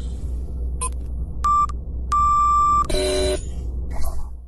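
Electronic outro sound effect: a short high beep about a second and a half in, then a longer beep at the same pitch, followed by a brief chord of tones near the three-second mark, all over a steady low synth drone.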